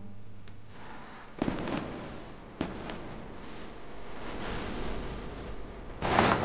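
Fireworks going off: two sharp bangs, about a second and a half in and again about a second later, each with a short trailing rumble, over a steady crackling hiss.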